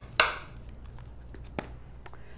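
A sharp tap on a wooden tabletop just after the start, then a much lighter click later on, from hands handling cardstock and a tool on the table.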